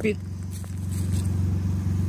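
A vehicle engine idling: a steady low hum that runs on without change.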